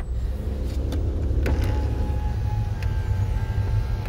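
Road and engine noise of a moving car heard from inside the cabin, a steady low rumble. About a second and a half in, a faint steady whine joins it.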